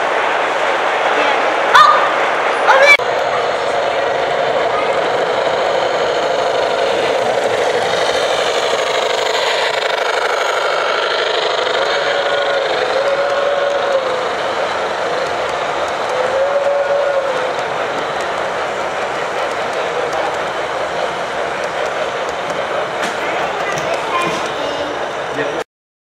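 O-scale model trains running steadily along the layout track over a background of people talking, with two sharp clicks about two and three seconds in and a few short horn-like tones near the middle.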